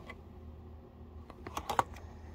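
Clear plastic card-sleeve pages in a ring binder being handled and flipped: a sharp click at the start, then a quick run of clicks and crinkles about a second and a half in, the loudest near the end.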